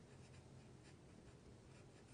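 Faint sound of a felt-tip marker writing a word, barely above silence.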